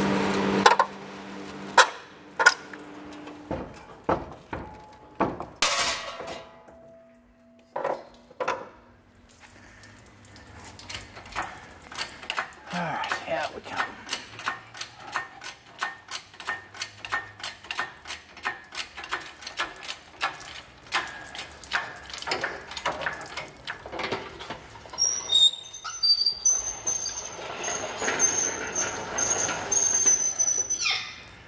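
Workshop tool noise from unbolting an engine for removal: scattered knocks and clanks, then a long run of rapid clicking, about four a second. A high squeal starts near the end.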